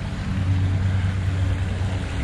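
A steady low engine-like drone, holding one pitch, with a rushing noise over it.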